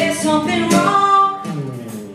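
A woman singing live to her own acoustic guitar, her voice holding long notes over strummed chords.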